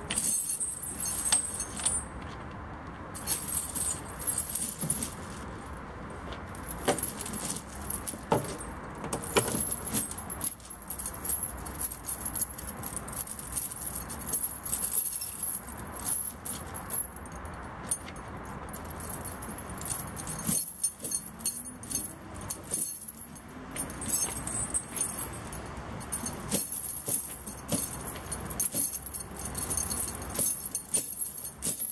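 Steel snow-chain links clinking and jangling irregularly as the chain is handled and worked around a truck tyre.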